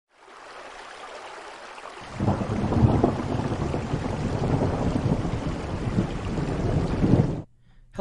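Recorded rain and thunder, laid under an intro: a steady rain hiss, then about two seconds in a loud rolling thunderclap that rumbles on and cuts off suddenly near the end.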